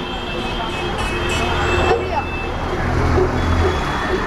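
Street traffic noise, with a vehicle engine running close by; its low hum grows stronger in the second half, over faint background voices.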